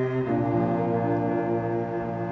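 Solo cello bowing sustained low notes, changing note about a quarter second in, in a chamber piece before the flutes enter.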